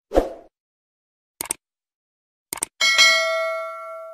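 Sound effects of a YouTube subscribe-button animation: a short pop, two quick clicks about a second apart, then a notification-bell ding that rings and fades over about a second and a half.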